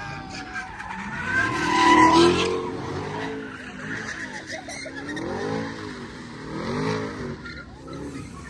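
Car engine revving in repeated rising and falling swells, about one every one and a half seconds, with tires squealing as the car spins donuts on the pavement; loudest about two seconds in.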